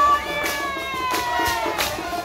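Murga band music: brass notes held and then sliding slowly down in pitch, over regular drum and cymbal strokes.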